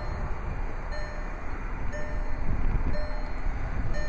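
Steady low rumble and hiss of outdoor background noise, with a faint short tone recurring about once a second.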